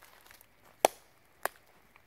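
Two sharp knocks a little over half a second apart, the first the louder, after a few faint crackles like movement in dry leaves.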